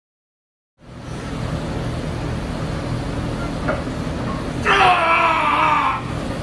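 Near silence for under a second, then steady gym room noise with a low hum. About five seconds in comes a loud, drawn-out, hyped-up yell, falling in pitch and lasting about a second.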